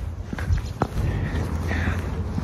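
Footsteps of a person walking on a concrete sidewalk, a few soft steps over a low steady rumble.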